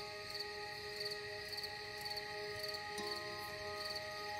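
Crickets chirping steadily, about two short pulsed chirps a second, over slow ambient music of long held chords that shift about three seconds in.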